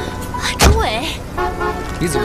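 Drama background music, with a loud car door slam a little over half a second in, followed at once by a short exclamation from a voice.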